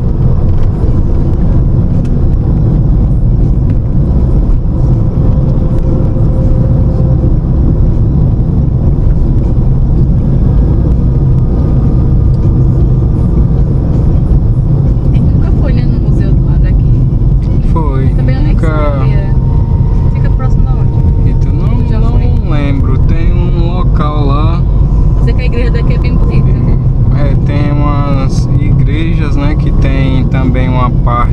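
Steady low rumble of road and engine noise inside the cabin of a moving Ford Focus 2.0 hatchback. A voice talks over it from about halfway through.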